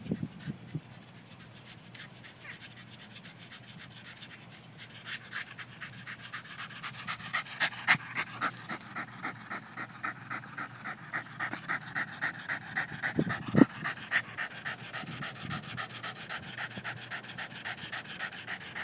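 West Highland white terrier panting hard in quick, even breaths, the sign of exhaustion after a long run of fetch; the panting is soft at first and grows louder about five seconds in. A couple of short thumps about two-thirds of the way through.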